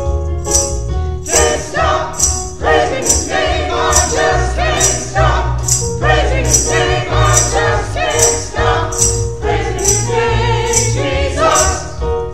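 Small gospel choir singing a hymn with keyboard accompaniment, over a steady high percussion beat of about two strokes a second.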